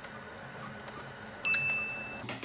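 Epson WorkForce WF-3520 all-in-one running a colour copy, its scanner working with a steady mechanical whir. About one and a half seconds in comes a click and then a steady high tone lasting most of a second.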